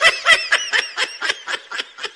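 A person laughing in a rapid run of short, high-pitched giggles, about five a second, loudest at the start and fading toward the end.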